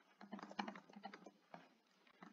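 Faint computer keyboard key presses, a quick run of light clicks as a line of code is copied and pasted several times.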